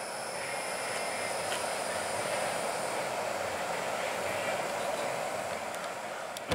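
Steady outdoor background noise, a hiss that swells gently and eases off near the end, with faint steady high-pitched tones above it.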